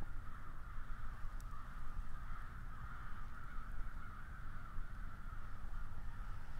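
Outdoor ambience: a steady, even hum in the upper-middle pitch range over a low rumble of wind or handling noise.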